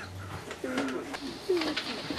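A person's muffled, wordless voice: a few short, low moaning sounds that slide in pitch, starting about half a second in.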